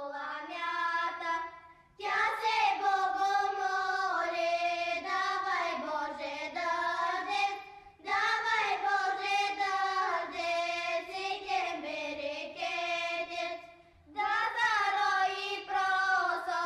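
Girls singing a peperuda rain-ritual song in unison, a single melody in long phrases with short breaks about two, eight and fourteen seconds in.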